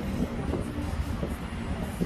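Steady low rumble of city background noise, with a few faint short tones.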